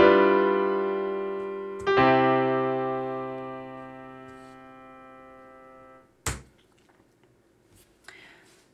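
Sampled grand piano (Ableton Live's Grand Piano instrument) striking two chords about two seconds apart, each left to ring and fade away. The sound stops about six seconds in, and a single short click follows.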